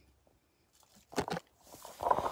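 Near silence, then two short crackles about a second in and a rising rustle near the end: close handling noise.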